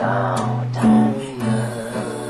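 Acoustic guitar being strummed, ringing chords with a few sharp strokes.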